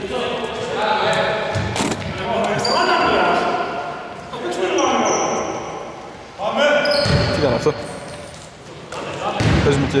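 A basketball bouncing on a hardwood gym floor, with players' voices calling out across the court, all echoing in a large sports hall.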